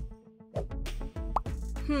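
Background music with a steady beat. A short, quick rising blip sound effect comes a little past the middle.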